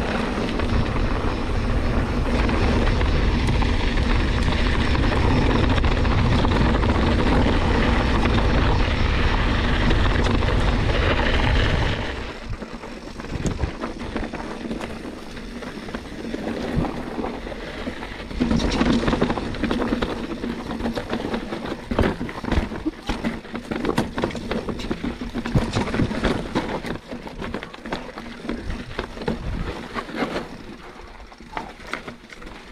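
Wind rumbling on the camera microphone as an enduro mountain bike rides fast down a smooth dirt track; about twelve seconds in the rumble drops away and the bike clatters over rocky ground, with tyres crunching on stones and irregular knocks and rattles from the bike.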